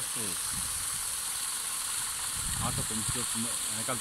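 Paddle wheel of a solar-powered pond aerator churning the water: a steady splashing hiss of spray.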